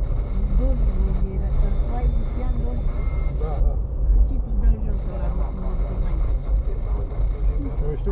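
Inside a car's cabin rolling slowly over a rutted dirt road: a steady low rumble from the tyres and suspension on the unpaved surface, with people talking indistinctly.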